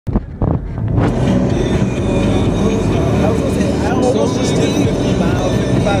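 Steady road and engine noise inside a car moving at highway speed, heaviest in the low rumble. It opens with a couple of brief knocks before the noise settles in at full level about a second in.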